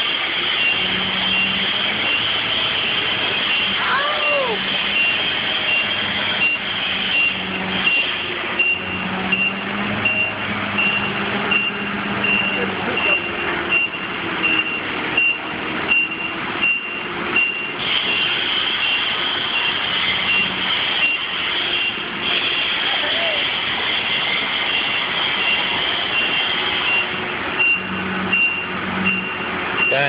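Electronic warning beeper, like a backup alarm, sounding steadily at about two beeps a second over a low machinery hum, with occasional knocks.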